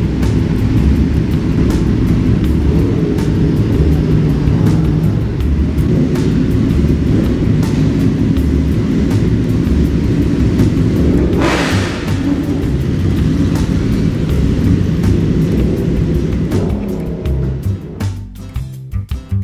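Group of sport motorcycles running and pulling away, a steady low engine rumble with one louder rushing pass or rev a little over halfway through, under background music.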